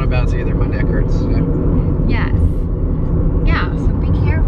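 Steady low rumble of road and tyre noise heard inside a moving car's cabin on a bumpy road, with short bits of voices over it.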